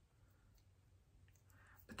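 Near silence: room tone, with a few faint clicks a little past the middle.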